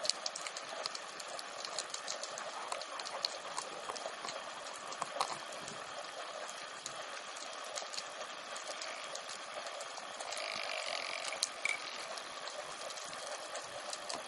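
Underwater ambience picked up through a camera housing: a steady hiss with constant scattered clicks and crackles, growing slightly louder for a couple of seconds about ten seconds in.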